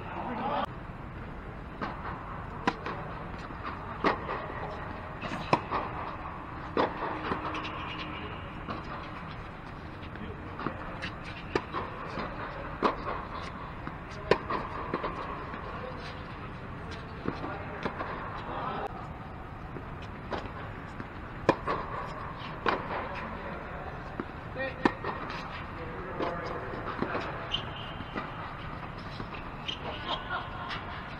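Doubles tennis rally on a hard court: sharp racket strikes and ball bounces at irregular intervals, with players' voices in between, inside an air-supported tennis dome.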